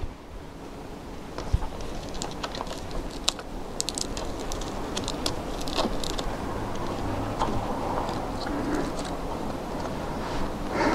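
Light clicks, ticks and rustling of a power cable and its plastic connectors being handled and routed along a telescope mount. The clicks come thickest in the first half, over a steady low hiss.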